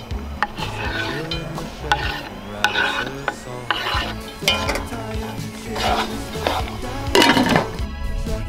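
Knife scraping chopped vegetables off a wooden cutting board into a pot of hot oil, with repeated clicks and knocks of knife and board and sizzling as the vegetables land; the loudest rush comes near the end.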